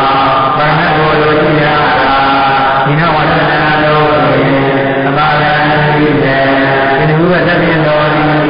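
Voice chanting a Pali grammar recitation in a sing-song tone, each phrase held on a steady pitch for a second or two with brief breaks between phrases.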